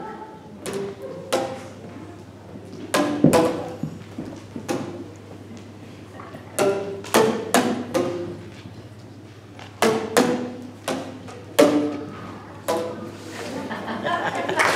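Boomwhackers (tuned plastic tubes) struck one or two at a time in a slow, irregular pattern. Each hit is a short pop with a clear pitch, and the notes change from hit to hit.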